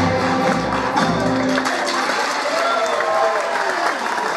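Music of a song number ending about halfway through, then audience applause with some cheering and voices.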